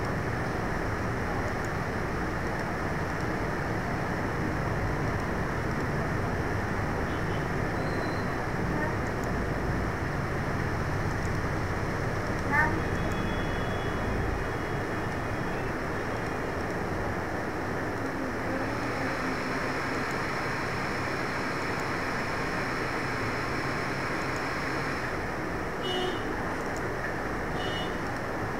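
Steady background noise, with one brief sharp sound about halfway through.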